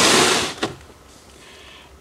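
A plastic storage bin loaded with glass jars and cans being slid out from under a shelf: a scraping slide that stops about half a second in, followed by a single short click.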